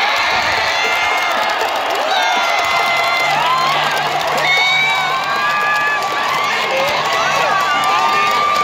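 Large baseball stadium crowd cheering and shouting in celebration of a walk-off home run, many single voices calling out over the steady noise of the stands.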